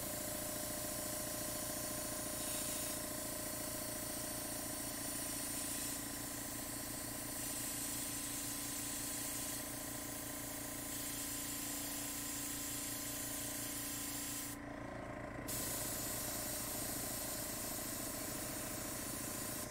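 Small-cup PointZero gravity-fed airbrush spraying paint, a steady hiss of air over a steady hum, with a needle the reviewer takes for about 0.3 mm. The hiss cuts out for about a second near the end, then resumes.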